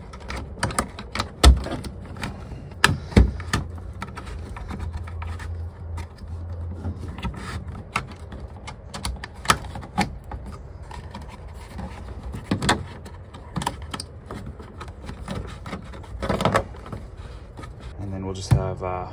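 Irregular clicks, taps and rustles of Romex cable being worked through the knockouts of a plastic electrical box, with a couple of sharper knocks in the first few seconds.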